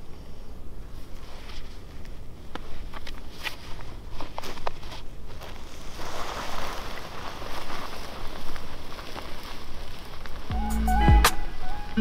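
Footsteps crunching on dry, gravelly desert ground, with scattered twig snaps and the scrape of a coyote carcass dragged behind on a rope. Music comes in about ten seconds in.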